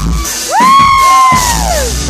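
A loud, high-pitched scream from the crowd close to the recorder: it rises, holds for about a second, then falls away, over the live rock band.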